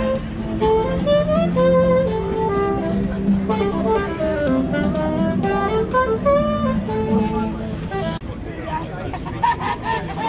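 Saxophone played by a street busker, a flowing melody over crowd chatter, cutting off abruptly about eight seconds in, after which only crowd voices remain.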